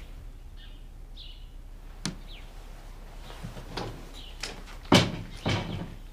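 An old wooden door being opened with a few knocks and rattles, the loudest bang about five seconds in and another just after it.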